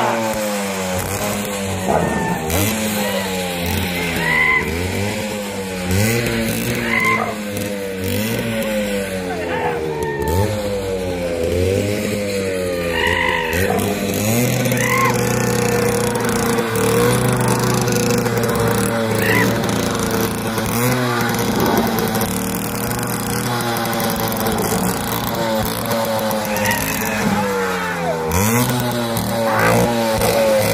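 Motorcycle engine revved again and again, its pitch sliding down after each rev, holding steadier for several seconds midway.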